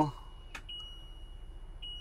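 Steady high-pitched warning beep in the cab of a Ford Transit-based camper van with the engine running. It sounds because the swivel seat is turned and not locked forward, and it breaks off briefly twice. A faint click comes about half a second in.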